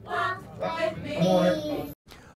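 Gospel choir singing, voices holding wavering notes; the music cuts off abruptly near the end.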